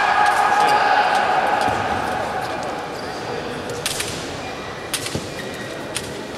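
Fencing scoring machine's touch signal: a steady electronic tone that stops about two seconds in, after a touch has been registered. A few sharp knocks follow near the end.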